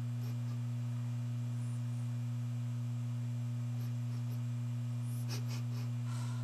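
Steady low electrical hum with one fainter overtone above it. A brief soft noise comes about five seconds in.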